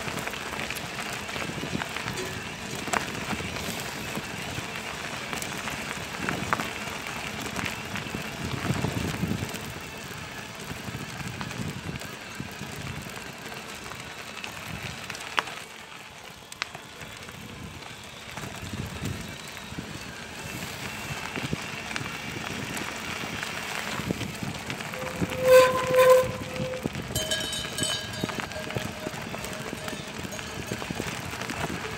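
Bicycle tyres rolling over a gravel dirt track, with the bike rattling and ticking over loose stones. Near the end come two short, loud pitched calls close together.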